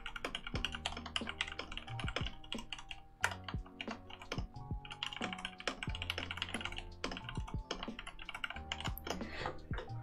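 Mechanical keyboard being typed on fast and steadily, a dense run of key clacks with short pauses, over quiet background music.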